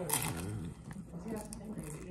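A crisp bite into a fried rolled taco just after the start, followed by chewing. A voice talks in the background.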